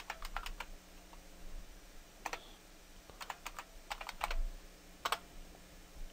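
Computer keyboard typing: about a dozen light keystrokes in irregular runs, a quick cluster at the start and more spread through the middle, as a login password is typed.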